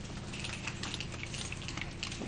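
Light, scattered applause: many quick, irregular claps, quieter than the speech around it.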